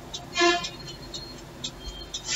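A single short, loud horn-like honk about half a second in, one steady note with many overtones.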